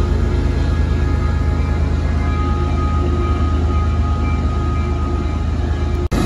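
Diesel locomotive engines running steadily, a deep drone with a few steady tones above it.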